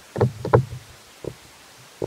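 Dull, heavy thuds over a steady hiss: two or three close together about a quarter-second in, then a fainter single thud about a second later.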